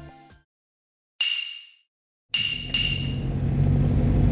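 Background music fading out, then after a silence a single bell-like chime that rings and dies away about a second in. About two seconds in, the steady low rumble of a car driving begins, heard from inside the cabin, with a brief second ring at its start.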